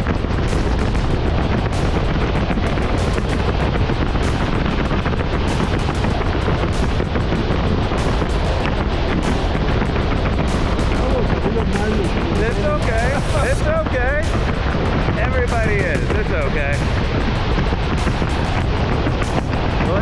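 Steady wind buffeting the camera microphone during a tandem parachute descent under an open canopy. Brief indistinct voices come through the wind in the second half.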